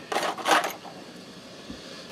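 Brief handling noise of small metal tools on a cloth-covered workbench: two short rustling, clattering bursts in the first second, then only a low background.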